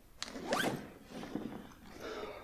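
Zip on a fabric bag pulled quickly: a click, then a rising zipping rasp, followed by a shorter, weaker rasp about a second in.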